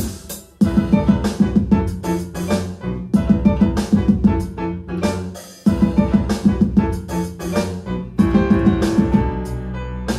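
A live band playing an instrumental piece: a grand piano leads over a drum kit. The music briefly drops away just after the start and again about halfway through, then comes back in with the full band.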